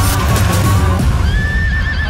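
Film trailer soundtrack: music over a heavy low rumble, with a horse whinnying in the second half as a mounted warrior leaps.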